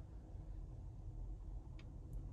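Quiet cabin of a Mercedes-Benz EQE electric car creeping along at parking speed under Memory Parking Assist: a faint, steady low rumble, with one small tick near the end.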